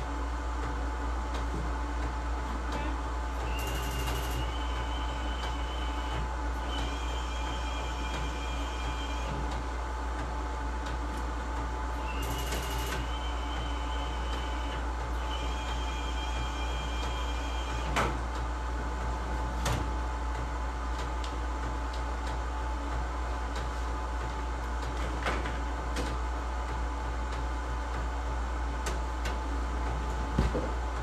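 Direct-to-garment printer running: a steady machine hum, with two stretches of a high whine, each several seconds long, that start with a click, and a few single clicks later on.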